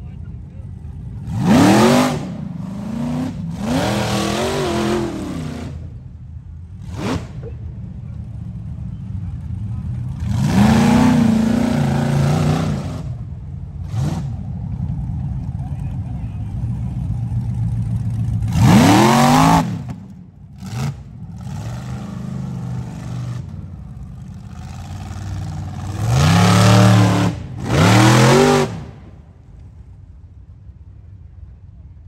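Rock bouncer buggy engines revving hard in about six bursts, each pitch sweeping sharply up and falling back, as the buggies claw up a steep rock and dirt hill. Between the bursts the engines run lower.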